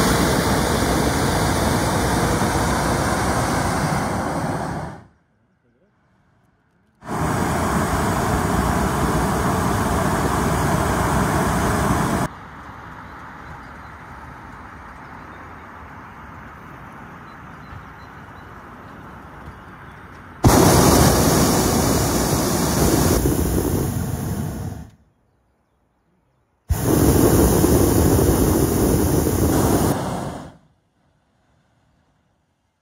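Hot air balloon's propane burner firing in four long blasts of about four to five seconds each, with quieter stretches between.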